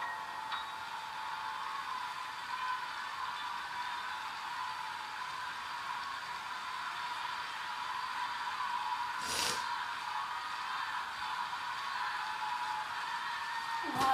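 Large concert audience applauding, a steady wash of clapping, with a short sharp rustle about nine and a half seconds in.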